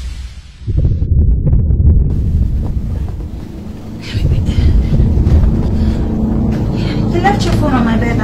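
Dramatic background film score: a deep rumbling drone with sustained low tones coming in about halfway through.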